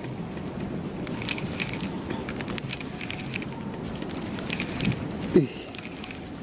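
Spinning reel being wound in against a heavy load on the line, its faint irregular ticking over steady wind and water noise; a short exclamation near the end.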